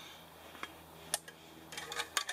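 A few light metallic clicks and clinks as a Trangia spirit burner and a small stainless camp kettle are handled, with a quick cluster of clicks near the end.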